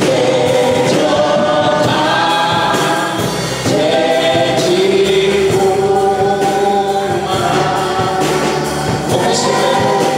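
Gospel worship song sung by a group of voices together, moving slowly between long held notes.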